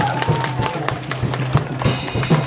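Taiwanese opera stage accompaniment: a quick run of clacking percussion strikes over a held melodic note that drops out about halfway through.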